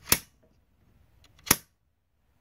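Circuit breaker clicking twice, about a second and a half apart, as it is worked back and forth on a hot bus lug to get a better connection.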